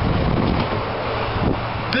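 Wind buffeting the camera microphone, over a steady low hum.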